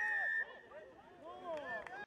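Rugby referee's whistle: one short, steady, high blast about half a second long, signalling a penalty for abandoning the lineout. Faint players' voices call on the field after it.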